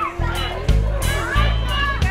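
Loud upbeat music with a heavy, pulsing bass beat and a singing voice.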